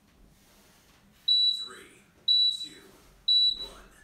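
Interval timer beeping the last seconds of a work interval: three short, high beeps about a second apart.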